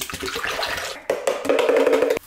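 Ready-to-drink protein shake poured from a bottle into an empty plastic blender jar, the liquid splashing into the jar; the pour grows louder and fuller about halfway through.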